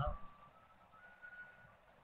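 A man's voice ends a spoken question, followed by near silence with only a faint thin tone.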